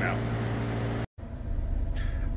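Steady low hum of background noise, cut off by a short gap of silence about a second in, followed by a low, uneven rumble inside a vehicle's cabin.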